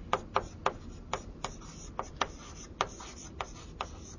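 Handwriting on a board or sheet: an irregular run of quick, sharp taps and short scratchy strokes, about four a second, over a faint steady room hum.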